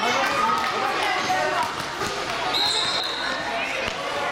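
Children and adults calling out in an echoing gym, with a basketball bouncing on the court floor. Just past the middle, a short high steady tone lasts under a second.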